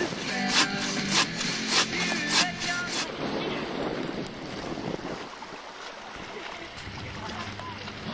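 A sharp beat about every 0.6 seconds for the first three seconds, then steady wind noise on the microphone with the faint, even running of a small boat's outboard motor.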